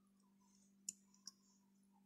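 Near silence broken by two faint clicks, about a third of a second apart, from a metal spoon knocking the glass bowl as it mixes a crumbly cheese-and-flour dough.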